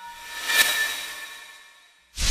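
Logo-intro sound effect: a hissing whoosh that swells about half a second in, then fades away.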